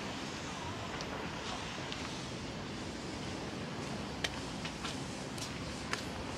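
Steady outdoor background noise, with a few faint short clicks, one about four seconds in and another near the end.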